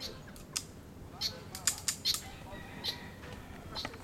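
A series of short, sharp clicks and clinks, about a dozen, with a quick cluster in the middle, from a pistol and shooting gear being handled between strings of fire. Faint voices are heard under the clicks.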